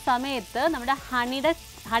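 Chicken frying in olive oil in a pan on a gas burner, sizzling softly under a woman's speech.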